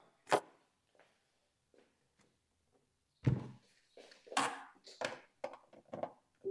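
Handling noise of a wireless microphone receiver being plugged into the input jack on the back of a Tribit portable speaker: a short click, a louder thump about three seconds in, then a few lighter clicks and knocks.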